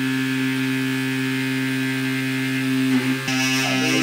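Motorised bone-cutting tool on a robotic surgical arm running with a steady, even-pitched hum, the robot just having cut the knee bone and retracted. About three seconds in a rougher hiss joins the hum.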